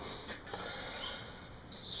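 Faint, steady background noise in a short pause between spoken phrases, with no distinct sound event and no machine running.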